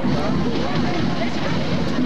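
Crowd noise in the stands: many voices talking and calling over one another, over a steady low rumble.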